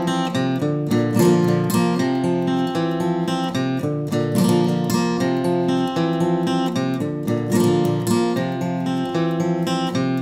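Acoustic guitar strummed in a steady rhythm of chords, with accented upstrokes between the chord figures.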